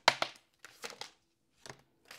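Deck of tarot cards being shuffled by hand: one sharp snap of cards right at the start, then a few softer shuffling strokes with a short pause between them.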